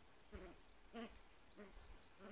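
Bedlington terrier puppies giving faint, short whimpering calls, three in quick succession.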